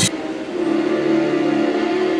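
Background music of sustained held notes with no beat, a new, fuller chord swelling in about half a second in.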